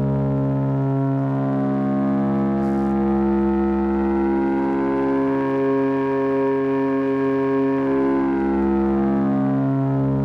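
A digital oscillator on an AE Modular GRAINS module running the Scheveningen firmware plays a steady synth drone. As its P1 knob is turned up and back down, the tone grows brighter and harsher and then smooths out again. The pitch does not change. The knob is described as a gain that very quickly goes into distortion, though the firmware actually adds a ring-modulated second sine wave.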